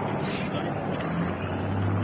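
Helicopter flying off, a steady rotor and engine noise with a low hum that strengthens about a second in. Faint voices are heard close by.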